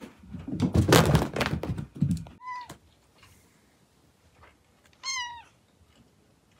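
Cat thudding and scrambling across carpet for about two seconds, the loudest part, then a short chirp and, about five seconds in, a brief meow.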